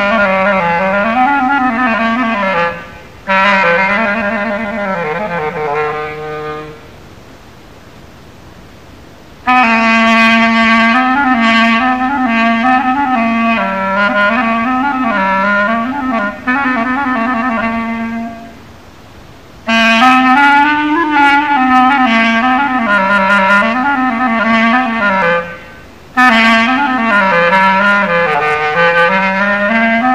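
A solo melodic instrument playing an unaccompanied Moroccan taqsim improvisation: slow, ornamented phrases of long held and bending notes in the low-middle register. The phrases break off for a pause of about three seconds roughly seven seconds in, and for shorter breaths near 19 and 26 seconds.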